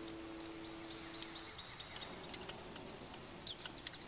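A fiddle's last note rings on faintly and fades out about a second and a half in. It leaves quiet outdoor ambience with faint, short bird chirps.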